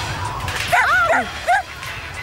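Cartoon puppy yapping: a quick run of high, arching barks about three-quarters of a second in, then one more short yip at about a second and a half, over background music.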